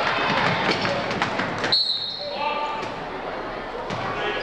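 A basketball bouncing on a hardwood gym floor amid crowd voices, with sharp knocks echoing in the hall. About halfway through a single short, high referee's whistle sounds, and the play noise drops away after it.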